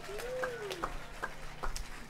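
Alto saxophone played briefly and softly as the saxophonist is introduced: a short phrase that bends up and back down in the first second, with a few faint clicks.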